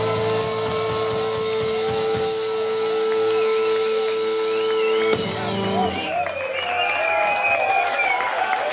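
Live punk rock band ending a song: electric guitars ring out on a sustained final chord over drums, cut off by a last hit about five seconds in. The crowd then cheers and claps.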